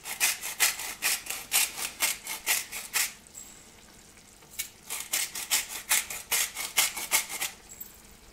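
Salt being ground from a salt mill over a pot, a run of short rasping strokes about three a second, a pause of about a second and a half, then a second, faster run of strokes.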